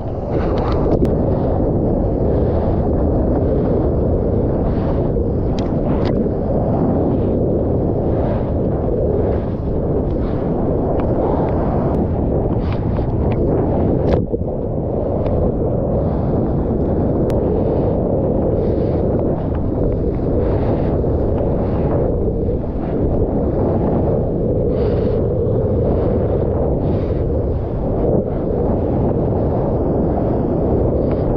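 Loud, steady rush of whitewater and wind buffeting a mouth-mounted GoPro close to the breaking surf, with short splashes of spray through it.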